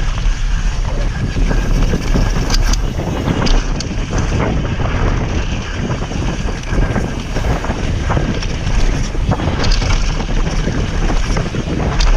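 Wind rushing over the microphone of a moving mountain bike, over the rumble of knobby tyres rolling on a dirt trail strewn with dry leaves. Frequent short knocks and rattles come from the bike jolting over bumps.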